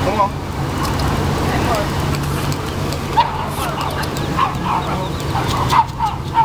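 Ducks calling in short scattered chirps, more often in the second half, over a steady low traffic hum and faint voices.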